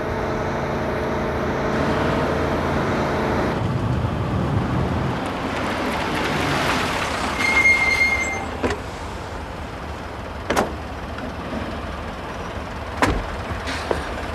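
Vehicle engines running with road noise as a car and a light truck drive up and stop, with a brief high squeal about halfway through. Two sharp knocks follow near the end, car doors shutting.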